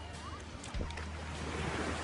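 Steady rush of surf and wind on an open beach.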